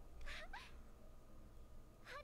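Faint audio from the anime episode being watched: a short, high call rising in pitch about half a second in, over a low steady hum.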